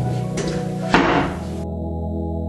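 A cupboard door pushed shut by hand, meeting its push-to-open latch with a single sharp knock just under a second in, over steady background music.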